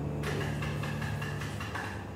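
The last low piano note of a jazz track dying away under coffee-shop ambience, with a quick rattling noise lasting about a second and a half.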